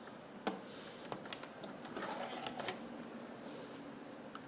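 Plastic pry tools clicking and scraping against the top edge of a Dell Inspiron N5110 laptop keyboard as its retaining clips are worked loose. There is one sharp click about half a second in, then a run of lighter clicks with a brief scrape around the middle.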